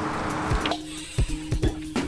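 Background music: a held low note over a thumping beat. A steady hiss underneath cuts off less than a second in.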